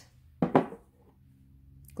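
A single brief knock about half a second in, sharp at the start and dying away quickly.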